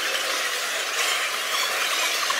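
Noise of a busy train station concourse while walking with the camera, heard as a steady thin hiss with the low end cut away.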